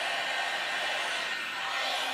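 Hot air brush blowing steadily, its motor and fan giving a constant hiss with a faint whine.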